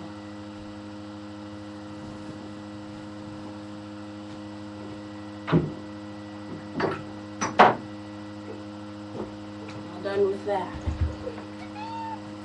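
A steady electrical hum runs throughout. A few short, sharp sounds of unclear origin come in the middle, the loudest about seven and a half seconds in.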